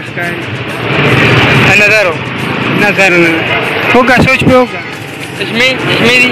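A motor vehicle passes close by in the street, its noise loudest from about one to three seconds in, under men talking.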